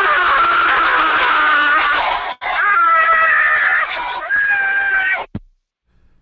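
Drawn-out, high-pitched screaming over a phone line, heard as three long shrieks with short breaks between them; it cuts off suddenly about five seconds in.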